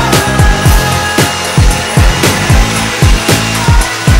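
Upbeat pop music with a steady, punchy kick-drum beat.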